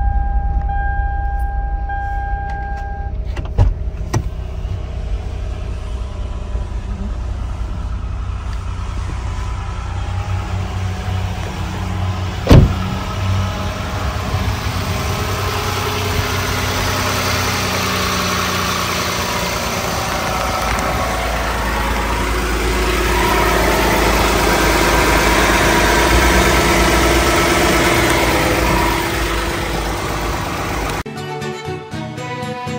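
Toyota Sienna minivan engine idling steadily. A steady chime sounds for the first three seconds, a couple of clicks follow, and a single sharp knock comes about twelve seconds in. The engine sound grows louder and fuller in the second half.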